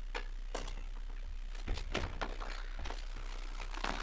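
Quiet room with a low steady hum and scattered faint clicks and light knocks from someone moving about near the microphone.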